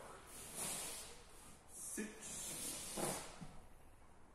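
Rustling and swishing of heavy cotton aikido uniforms and bare feet brushing the mats as two people move and drop to kneeling. The noise comes in several bursts, with two short, sharper sounds about a second apart near the middle.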